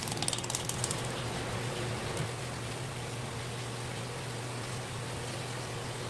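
A fillet knife drawn along an olive flounder's bones, ticking over them in a quick run of clicks in about the first second. A steady low hum runs underneath.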